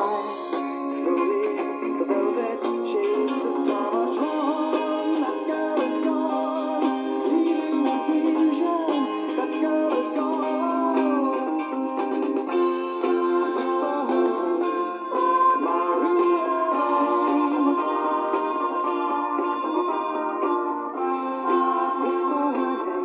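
Retro 80s-style HanXiangDa boombox playing a song through its built-in speakers, steadily. The sound is thin, with no deep bass.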